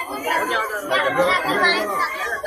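Several people talking at once: overlapping, indistinct chatter of a small crowd.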